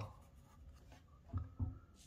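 Felt-tip permanent marker (Sharpie) scratching faintly on sketchbook paper, with short strokes filling in a small drawn shape. A brief low sound comes about one and a half seconds in.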